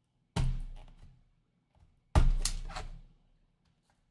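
Two sharp thunks about two seconds apart, each fading over most of a second, as a blade slits the security seals on a cardboard trading-card box resting on the table.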